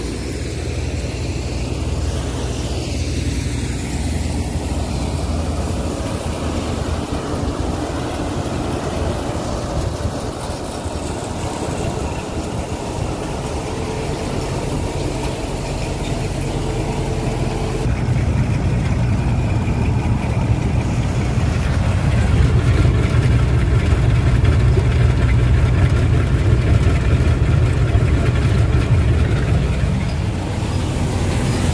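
Sesame threshing harvester running steadily, with engine and threshing machinery noise. The noise grows louder and deeper about eighteen seconds in.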